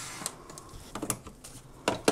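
A power strip's thick mains cable being handled and pulled across a table: a few light clicks and knocks, with a louder knock near the end.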